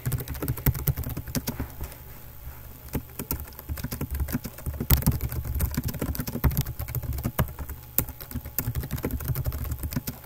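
Typing on a computer keyboard: an uneven run of quick key clicks, thinning out briefly about two seconds in before picking up again.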